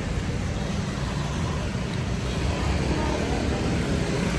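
Steady street traffic noise: an even, low hum of passing vehicles with no single one standing out.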